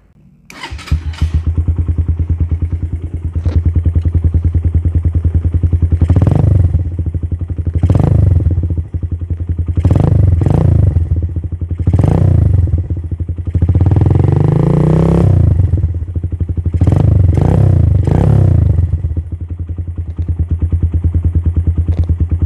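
Suzuki Thunder 125's single-cylinder four-stroke engine starting up about half a second in, then idling through a custom twin-outlet exhaust on the stock header pipe while the throttle is blipped repeatedly, with one longer rev near the middle. The exhaust note is soft and bassy, not noisy or tinny.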